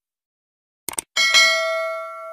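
Subscribe-button sound effect: a quick double mouse click, then a bell ding that rings on and slowly fades.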